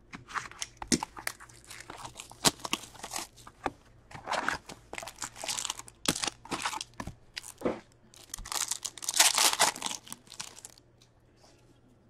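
A cardboard box of hockey trading cards being torn open and its foil-wrapped packs pulled out and handled: a busy run of crinkling, rustling, tearing and short clacks of card stock, which dies down for about the last second.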